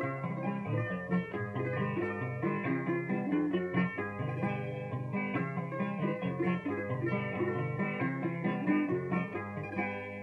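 Cuban punto guajiro accompaniment of plucked-string instruments playing an instrumental interlude of quick, short notes between sung verses, with no voice over it.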